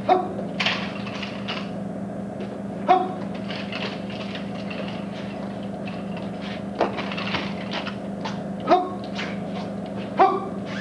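A martial artist's short, sharp kihap shouts, about four of them a few seconds apart, as he strikes. Quick swishes and snaps of the uniform fall between them. A steady low hum runs underneath.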